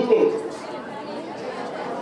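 A man's voice over a microphone ends a word, then a pause filled with faint background chatter from the audience.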